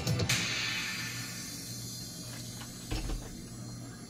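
Background guitar music ending on a final strum that rings out and fades away. A brief soft knock comes about three seconds in.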